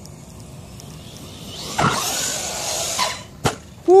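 JLB Cheetah RC car's brushless electric motor and drivetrain whining as it accelerates hard across grass, about two seconds in and for just over a second, the pitch rising and then holding. A single sharp knock follows shortly after.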